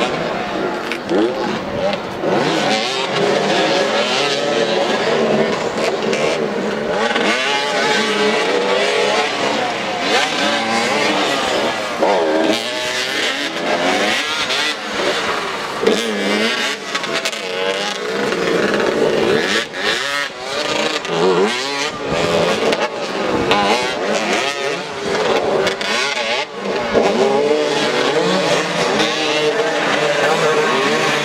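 Several motoball motorcycle engines revving and accelerating on a dirt track, their pitch rising and falling again and again as the riders chase the ball.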